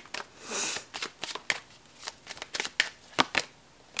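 Tarot cards being shuffled and handled by hand: a run of quick, irregular papery clicks and flicks, with a short soft rustle about half a second in.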